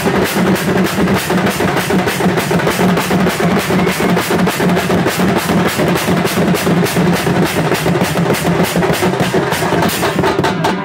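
Sambalpuri baja folk band playing live: hand-beaten drums and cymbals pounding out a fast, steady beat.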